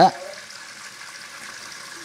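Kitchen tap running steadily into the sink, with water splashing over a chayote held under the stream.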